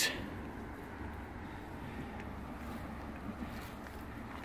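Faint, steady low rumble of outdoor background noise, with no distinct event.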